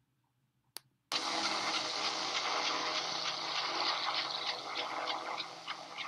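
A single click, then about a second later a steady rushing noise with a few held low tones under it starts up, easing a little near the end: the opening ambience of a played video's soundtrack.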